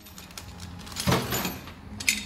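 Metal pump mounting brackets being handled in a plastic bag on a workbench: rustling and light metal clatter, with one louder bump about a second in.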